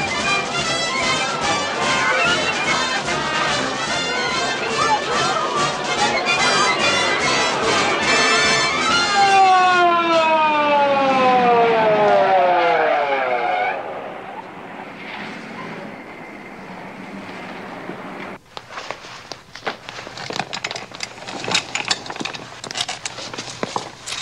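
Brass marching-band music with a steady drumbeat. About nine seconds in it gives way to an ambulance siren winding down in pitch. The last few seconds hold a run of sharp knocks and clatter.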